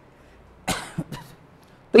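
A man coughing briefly to clear his throat: one short burst followed by two smaller ones.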